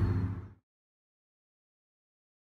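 A steady low background hum that fades out about half a second in, followed by complete silence as the audio cuts to nothing.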